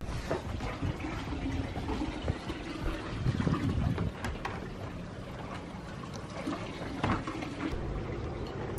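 Water trickling and lapping in an outdoor plunge pool, a steady noisy wash with a few light clicks.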